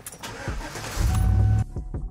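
Engine and road noise inside a moving truck's cab, under background music, swelling to a loud low rumble about a second in. It cuts off suddenly and gives way to music alone.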